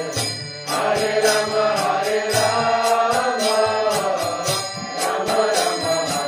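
Devotional kirtan: voices chanting a mantra to a melody, over a steady beat of ringing hand cymbals. The sound dips briefly about half a second in.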